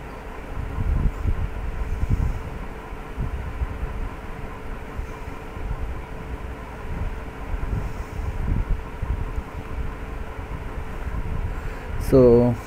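Low, uneven rumble of background noise with a faint steady hum running under it, and no speech.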